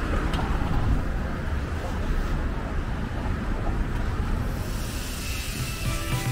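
City traffic: cars and a van driving past through an intersection, a steady rumble of engines and tyres.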